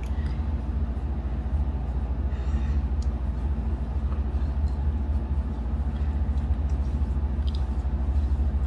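A steady low rumble with a faint, fast pulse in it, unchanged throughout, with only faint soft sounds above it.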